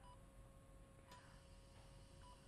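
Two faint, short, high beeps about a second apart from a hospital patient monitor, over quiet room tone with a faint steady hum.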